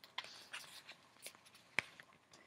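Faint handling noise, light rustling and a few soft clicks, with one sharper click near the end.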